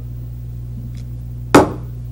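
A single sharp knock about a second and a half in, over a steady low hum.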